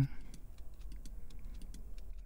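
Computer keyboard and mouse clicking: a quick, irregular run of light taps over a low steady hum.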